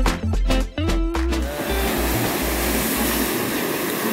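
Background music with guitar and a strong bass line stops about a second and a half in, giving way to the steady rush of ocean surf breaking on a beach.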